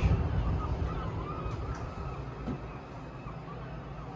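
Wind buffeting the microphone over a low city traffic rumble, strongest at first and dying away over the first two or three seconds to a quieter room hush, with a few faint high chirps in the first couple of seconds.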